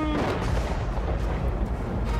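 A low, rumbling boom sound effect, like distant explosions or the ground shaking, starting suddenly right at the start and rolling on under the background music.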